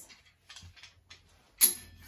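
Wire clothes hanger being hooked back onto a metal clothes-rack rail: a few faint ticks, then one sharp metallic click with a short ring about one and a half seconds in.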